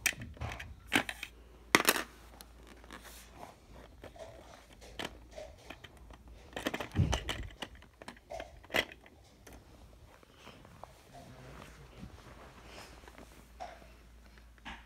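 Scattered small clicks and knocks of plastic LEGO pieces being handled and moved over a LEGO baseplate, the sharpest click about two seconds in and a short cluster of knocks around seven seconds.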